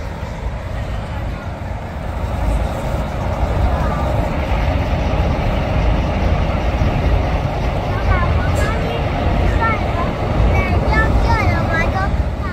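Busy city street ambience: a steady traffic rumble from passing vehicles and buses, with voices of people walking by. It grows louder a few seconds in.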